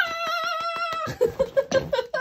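A woman's high-pitched excited squeal, held for about a second with a fast fluttering wobble, then broken into a quick string of about five short squeaks.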